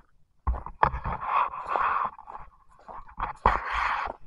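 Close rustling and handling noise on a handheld camera's microphone as it moves through shrubs, with a few short knocks. It comes in two stretches, about half a second in and again past the three-second mark.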